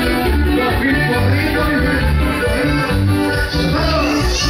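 Norteño band playing a cumbia: button accordion melody over bass and guitar with a steady dance beat.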